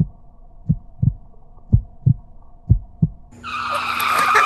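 Muffled sound as heard through water: low double thumps about once a second, like a heartbeat, over a faint steady hum. Music starts near the end.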